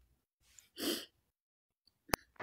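A woman's single short sigh, a breathy exhale about a second in.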